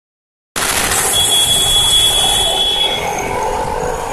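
Loud street noise with traffic, starting abruptly about half a second in; a steady high-pitched beep sounds over it for about two seconds.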